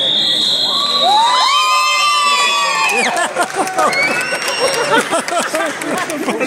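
A scoreboard buzzer sounds one steady high tone for about a second as the match clock runs out. Cheering and shouting follow, with long drawn-out yells for a couple of seconds and then mixed voices.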